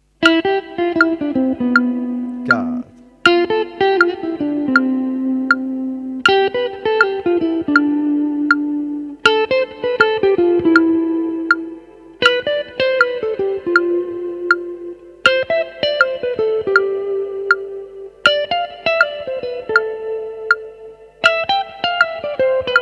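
Electric guitar playing a quick single-note phrase, repeated in a new group about every three seconds with each group sitting a little higher, over a steady metronome click.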